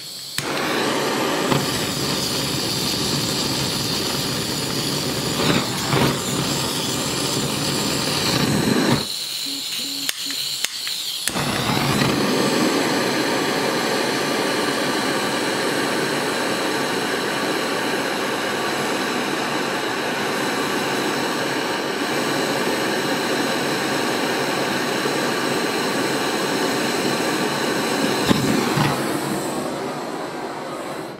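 Gas burner flame running with a loud, steady hiss, dropping away for about two seconds about nine seconds in and then coming back.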